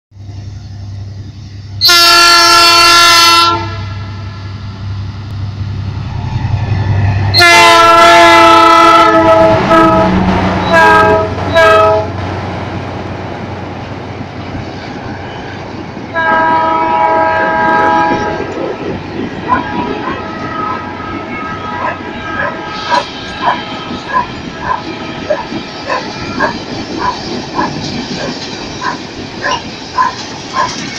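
EMD GT22CW diesel locomotive sounding its horn over the low running of its engine: a long blast, a longer one, two short ones, then another long blast. In the second half, as the train draws near, a rhythmic clacking of its wheels over the rail joints grows louder, about one and a half strikes a second.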